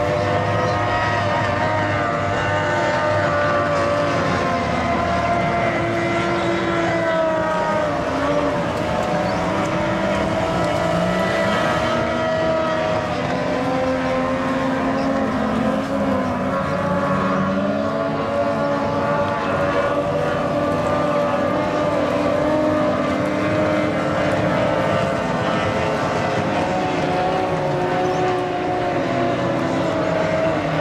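Outboard engines of 850cc-class race boats running at high revs. Several engine notes overlap and their pitch drifts up and down as the boats run the course.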